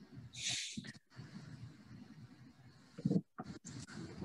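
A person's sharp breath or sniff on a call microphone about half a second in, then a short low mouth sound or mic bump about three seconds in, over a faint hum; the audio cuts out to silence for brief moments, as a call's noise suppression does.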